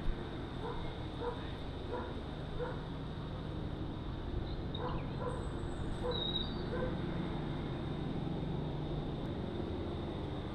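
A dog barking faintly and repeatedly, in two short runs of barks about two-thirds of a second apart, over steady outdoor background noise.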